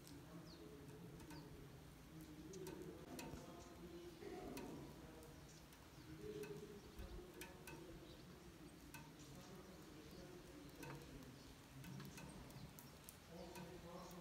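Near silence: quiet outdoor ambience with faint scattered ticks and drips, a low faint murmur, and a few faint bird chirps near the start.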